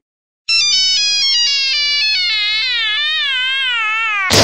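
Electronic ringtone-style melody: a quick run of bright beeping notes, starting about half a second in and stepping and zigzagging downward in pitch.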